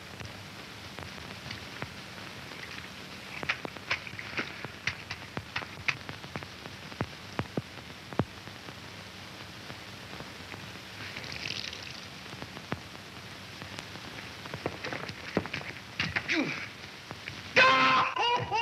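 Hiss and crackle of an old optical film soundtrack, with scattered sharp clicks and faint movement sounds. Music starts abruptly just before the end.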